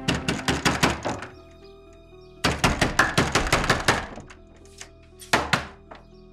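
A fist pounding rapidly on a heavy wooden door: a burst of about eight blows, then after a short gap a second burst of about ten, then one more blow near the end.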